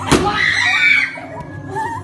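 A person screaming in fright. A sharp thump comes right at the start, then a high scream is held for about half a second before it breaks off into lower, shorter cries.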